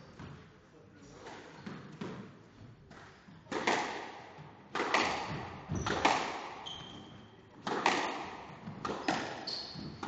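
Squash rally: the ball cracks off rackets and the court walls about once a second, each hit echoing in the enclosed court, louder from about three and a half seconds in. Short high squeaks of shoes on the wooden floor come twice in the second half.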